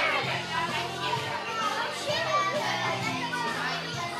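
Children chattering and calling out over music with held bass notes that change every second or so.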